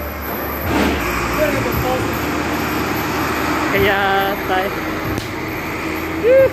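Steady street noise, with voices calling out twice and a few sharp clacks, one just under a second in and another about a second before the end.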